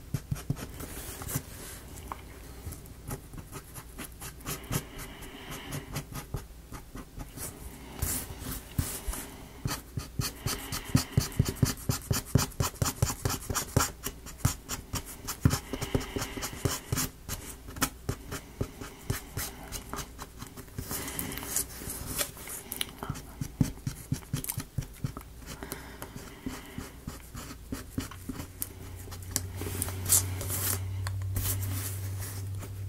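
Quick, short scratchy strokes of a paint tip or brush laying black paint onto a small thin wooden model piece, coming in irregular bursts that are busiest around the middle, over a faint steady hum.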